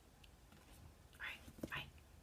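Faint background, then two short breathy whispers from a woman's voice, about half a second apart, starting a little past a second in.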